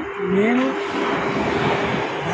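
Steady rushing noise of a passing motor vehicle, following a single short spoken word at the start.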